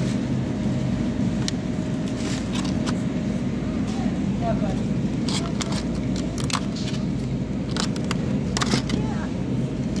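Store ambience: a steady low hum with faint voices in the background, and scattered sharp clicks and crackles from a hand handling the camera and the plastic packs.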